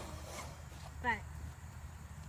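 Faint sounds of a thoroughbred gelding cantering loose on the sandy footing of a round pen. A short falling voice sound comes about a second in.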